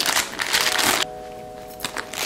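Plastic wet-wipe packet crinkling for about the first second as it is pushed into a leather handbag, then soft background music holding a steady chord.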